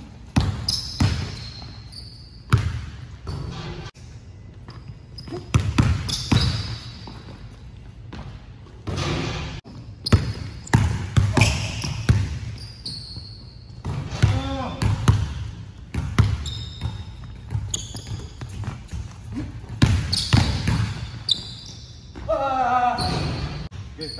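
A basketball dribbled hard on a hardwood gym floor, in quick runs of bounces, with short high sneaker squeaks on the court now and then.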